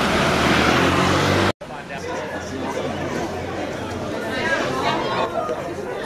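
A motor scooter's engine running as it passes close by. It cuts off abruptly, and a crowd of people chattering follows.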